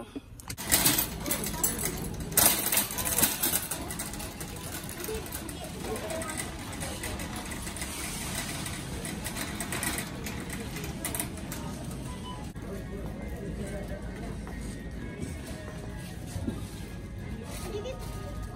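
Supermarket ambience: a shopping cart rattling as it is pushed along the store floor, under background music and indistinct voices, with louder clattering in the first few seconds.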